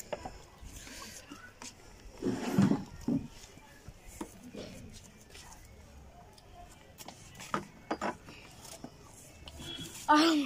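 Two people eating instant noodles: scattered clicks of spoons and forks against plastic bowls, with slurping and breathing. The loudest sound is a breathy vocal burst at about two and a half seconds.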